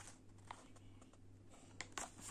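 Near silence with a faint low hum, broken by two faint light clicks, about half a second in and near the end, from a folded paper leaflet being handled.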